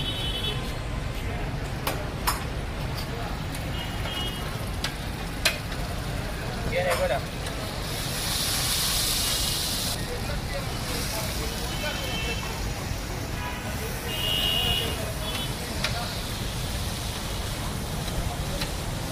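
Liver frying in hot oil on a large flat tawa: a steady sizzle, with sharp clicks of a metal spatula striking and scraping the pan. The sizzle swells loudly about eight seconds in and again around fourteen seconds.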